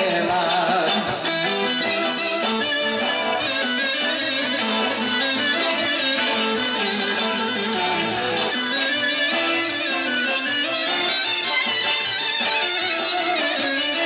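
Live Greek dance music from a band, played loud through PA speakers, with an electric guitar carrying the melody and little or no singing.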